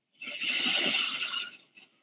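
A large auditorium audience laughing at a joke, starting a moment in and dying away shortly before the end.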